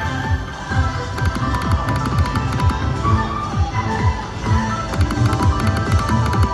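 Video slot machine playing its electronic game music and chimes during a free-spins bonus, with quick clusters of high ticks as the reels spin and stop.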